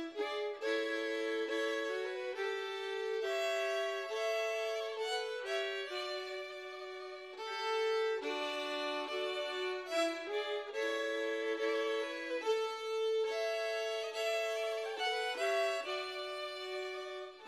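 Instrumental folk dance tune: a melody in two voices moving together in held notes, with no drums. It dips in loudness about six to seven seconds in and picks up again a second later.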